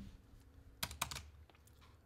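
A few keystrokes on a computer keyboard: three quick clicks a little under a second in, then a fainter one.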